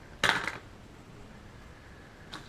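A brief clatter of a small piece of gear being handled, about a quarter of a second in, followed by quiet room tone.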